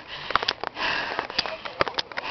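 Hard, rapid breathing of a person out of breath from running up a long flight of stone steps, with a few sharp clicks.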